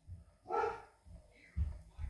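A dog barking faintly in the background, one short bark about half a second in, with a soft low thump about a second and a half in.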